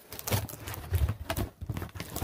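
Cardboard shoebox lid being worked loose and pulled off by hand: irregular knocks and scraping of cardboard.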